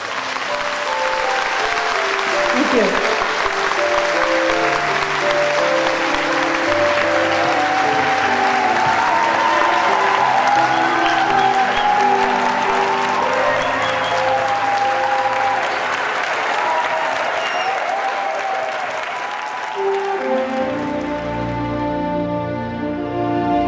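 Audience applauding over music with long held notes; the applause dies away near the end while the music carries on.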